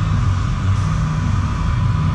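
Steady low mechanical hum and rumble of a running machine, with a faint constant higher tone over it.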